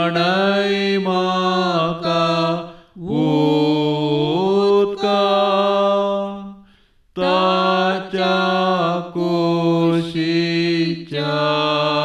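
A solo voice sings a slow devotional chant in long, held notes. The phrases break for a short breath about every four seconds.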